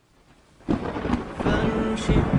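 Thunderstorm sound effect: thunder rumbles up out of silence and breaks into a loud crack about two-thirds of a second in, then keeps rolling over the hiss of rain.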